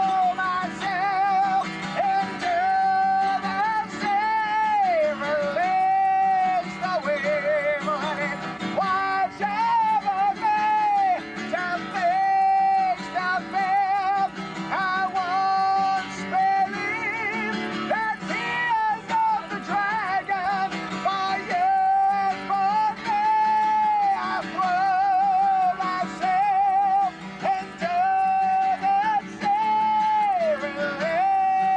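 Acoustic guitar playing chords, with a high voice over it singing long held notes with vibrato and occasional downward slides.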